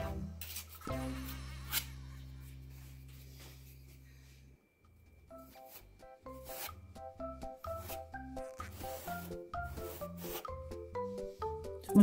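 Background music: a held low chord fades out over a few seconds, then a light melody of short notes plays. Beneath it, a flexible spatula rubs and scrapes as it spreads wood filler paste into a gap along a door edge.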